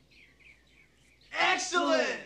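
Faint high chirps over quiet room tone, then about one and a half seconds in, a loud, excited male vocal outburst with a swooping pitch.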